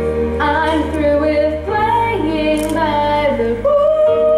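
A young female soloist singing a slow melody with long held notes over steady instrumental accompaniment.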